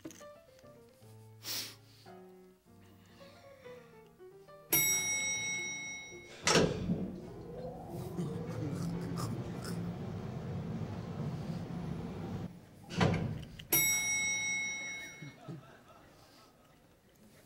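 Recorded music and sound effects for a stage scene change: soft musical notes, then a bright chime about five seconds in, followed by a heavy thud and several seconds of dense rumbling noise, a second thud and another chime near the end.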